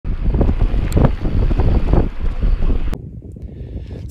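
Wind buffeting the microphone, a loud low rumble that surges unevenly. A little before three seconds in it cuts off abruptly to a much quieter low wind rumble.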